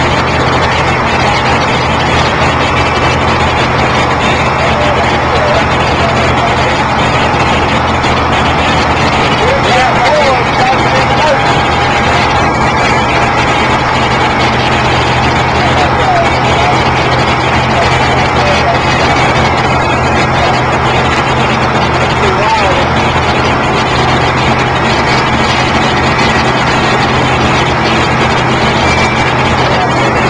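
A steady engine hum runs throughout, with indistinct voices and chatter over it.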